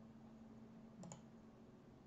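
Near silence over a faint steady hum, broken about a second in by a single computer mouse click, a quick press and release.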